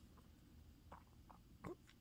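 Near silence: room tone, with a few faint short clicks, the clearest about three-quarters of the way through.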